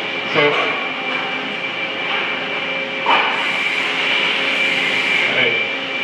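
Steady machinery hum with a constant high whine. About three seconds in there is a sudden burst, followed by a hiss that lasts about two seconds.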